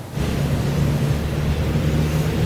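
Street traffic: a steady low engine drone from a truck and passing cars, starting abruptly just after the beginning.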